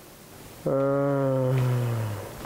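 A deep voice making one long, drawn-out sound that starts about two-thirds of a second in and holds steady, sagging slightly in pitch at the end.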